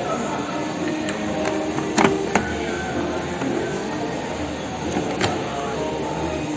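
A few sharp clicks from the program selector knob of a Beko front-loading washing machine as it is turned, the strongest about two seconds in and again about five seconds in, over a steady background hum.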